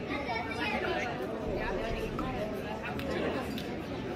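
Background chatter: several people talking at once, no words clear, with a few faint clicks.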